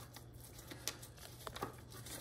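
Faint sounds of a knife slicing between tender pressure-cooked pork spare ribs on butcher paper: soft paper rustles and a few small ticks.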